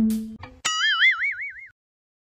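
A plucked-string music note dies away, then about half a second in a cartoon-style wobbling sound effect comes in, its pitch wavering up and down about four times a second for roughly a second before it cuts off.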